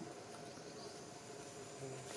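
Steady insect chorus outdoors: a thin, continuous high buzz with lower steady drones under it, at a low level.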